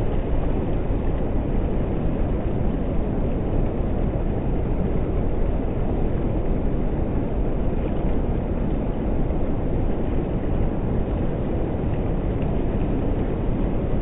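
Strong wind buffeting the phone's microphone, a steady low rumble.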